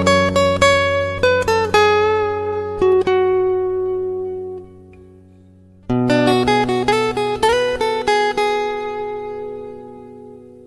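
Background acoustic guitar music: a melody of plucked notes that fades out near the middle, then starts a new phrase about six seconds in and fades again.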